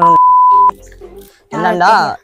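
A loud, steady single-pitch censor bleep lasting under a second and cutting off abruptly, laid over the talk; speech resumes about a second and a half in.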